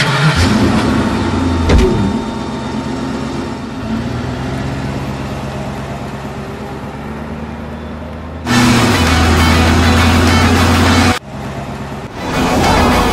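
A big American sedan's engine starting and running as the car pulls away. It turns much louder for a few seconds near the end as the car comes close, then cuts off suddenly.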